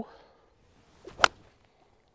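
TaylorMade P790 UDI driving iron swung from the rough: a brief swish, then a single sharp crack as the clubface strikes the ball about a second and a quarter in. It is a clean, well-struck shot.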